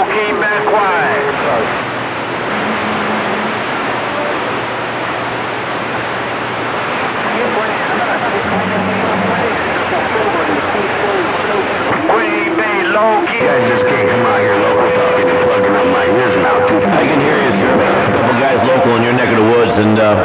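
CB radio receiving crowded skip conditions: a loud wash of static and band noise with weak, garbled voices of several stations talking over one another. A steady whistle-like tone comes in after the midpoint for about three seconds. Other stations are covering the one being called.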